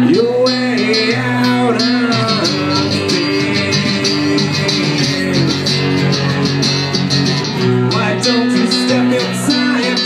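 Two guitars playing live, one an acoustic strummed in a steady rhythm under a melodic lead line that slides between notes.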